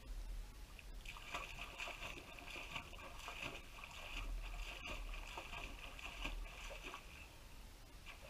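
Water splashing and lapping, a busy watery patter that picks up about a second in and eases off near the end, over a steady low rumble.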